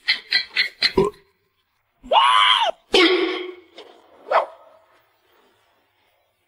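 A dog vocalizing: a drawn-out call that rises and falls about two seconds in, then a shorter, lower one and a brief yelp-like burst, after a few short sounds in the first second.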